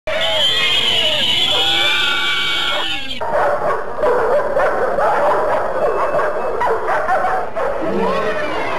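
Cartoon dogs barking and yipping on an animated film soundtrack, with an abrupt cut about three seconds in to a denser run of short overlapping yaps and whines.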